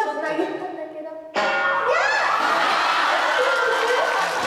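A bell-like chime rings and fades, then about a second and a half in there is a sudden cut to voices with a rising exclamation.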